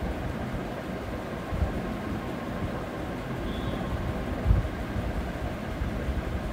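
Steady low background rumble, with two soft low thumps, about one and a half seconds in and about four and a half seconds in.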